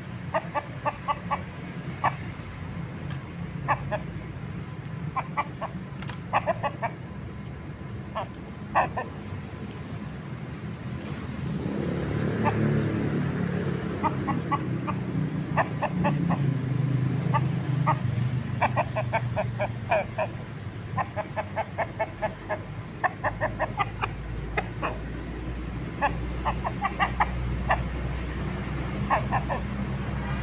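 Rooster clucking in short quick runs of notes again and again. A vehicle's rumble swells and fades about halfway through.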